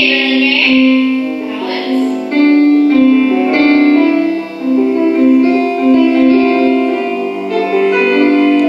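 Slow piano music with held notes changing every half second or so, played as accompaniment for a ballet barre exercise. A brief rush of noise sounds at the very start.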